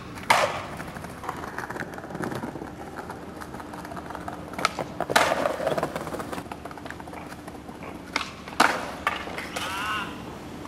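Skateboards on stone tile paving: a sharp crack as a flip-trick landing hits just after the start, wheels rolling over the tile joints, and more sharp board slaps about five seconds in and again near the end.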